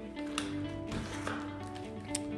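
Soft background music with steady held notes, and a faint click about half a second in as a front door's handle and latch are worked open.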